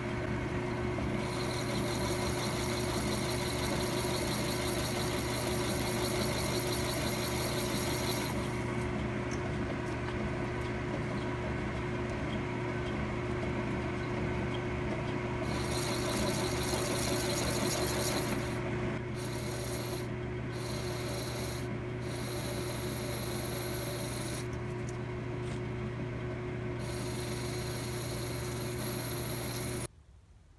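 Logan 10-inch metal lathe running with a steady motor and drive hum while a high-speed steel tool turns the outside of an aluminum workpiece. The cutting hiss stops about eight seconds in, starts again about halfway through, breaks off several times and ends a few seconds before the end.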